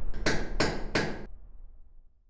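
Sound-logo effect on an end card: three sharp, evenly spaced strikes about a third of a second apart over a low rumble, which fades out after them.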